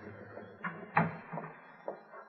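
A few light, sharp knocks at uneven spacing, from a radio drama's sound effects.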